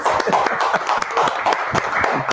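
A small group of people clapping: a dense, steady patter of hand claps.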